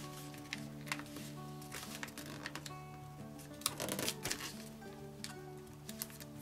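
Sheet of origami paper rustling and crinkling under the fingers as a flap is folded and creased, with a busier patch of handling about four seconds in. Soft background music with sustained notes plays underneath.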